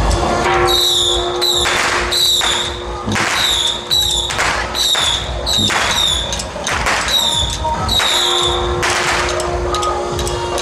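Street procession music: a steady held tone under rhythmic percussion strikes, each with a high ringing note that dips slightly in pitch, repeating about once or twice a second.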